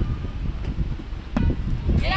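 Wind buffeting the camera microphone in low gusts, with one short thump about one and a half seconds in.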